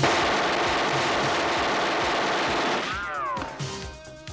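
A long burst of automatic gunfire that starts suddenly and runs for almost three seconds over the film's score, then stops, leaving the music.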